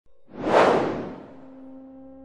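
A whoosh sound effect that swells in and fades away within about a second, followed by a low steady tone held underneath.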